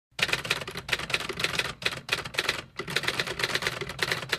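Rapid typewriter key clacking, many strokes a second, with two brief pauses along the way.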